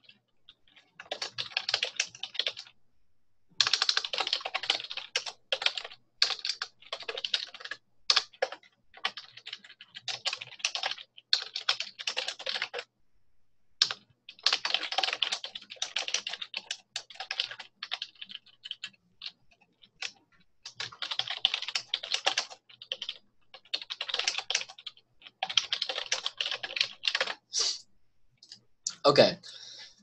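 Typing on a computer keyboard: quick runs of keystrokes a few seconds long, broken by short pauses.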